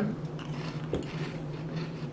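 Faint crunching of puffed corn snacks being chewed with closed mouths, a few soft crackles over a steady low hum.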